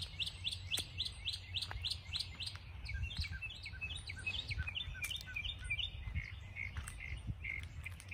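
A songbird singing a fast run of repeated high chirps, about five a second, which gives way about three seconds in to a slower series of lower notes that fades out near the end.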